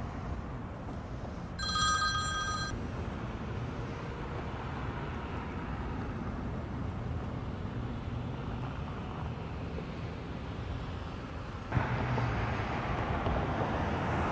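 Street traffic with vehicles driving by. About two seconds in, a short electronic ringing tone sounds for about a second. Near the end a vehicle passes louder.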